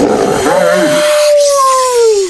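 Wolf howling: one long howl that rises at first, holds, and starts to fall near the end. A rough hissing noise runs under the first second or so.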